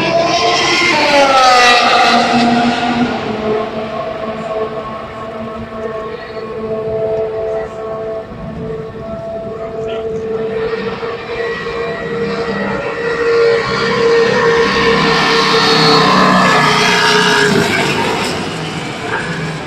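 Formula 1 cars' V6 turbo-hybrid engines. One passes with a falling note about a second in. Then an engine holds a steady note for several seconds, growing louder as a car comes down the pit lane, and falls off just before the end.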